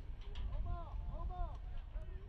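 Faint, indistinct voices calling out on an outdoor soccer pitch, several short shouts, over a steady low rumble of field ambience.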